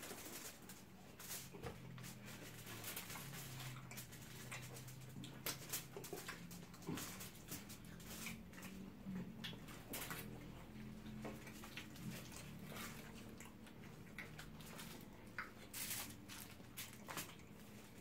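Faint eating sounds at a table: scattered soft clicks and crinkles of fingers picking grilled fish off aluminium foil, with chewing and lip smacks.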